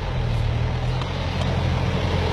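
Toyota Land Cruiser 90's engine pulling steadily under load as the 4x4 ploughs through deep snow, growing a little louder as it approaches.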